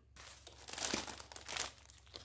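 A thin plastic shopping bag and foil snack packets crinkle as they are handled, and a packet of biscuits is pulled from the bag, in irregular bursts of rustling.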